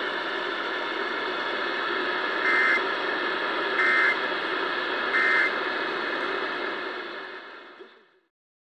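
Steady radio hiss with three short bursts of Emergency Alert System data tones about 1.3 seconds apart, the shape of the end-of-message signal, received on a RadioShack 12-996 radio. The sound fades out near the end.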